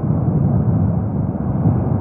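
Kīlauea's erupting summit lava lake with a lava fountain: a loud, steady low rumble.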